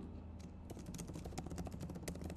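Computer keyboard typing, faint rapid key clicks starting about half a second in.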